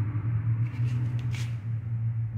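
A steady low hum, with faint brief rustles about a second in.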